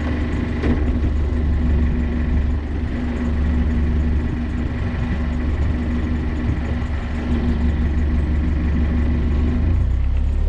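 Narrowboat diesel engine running steadily at low revs in reverse gear, a constant low hum with a faint steady whine above it.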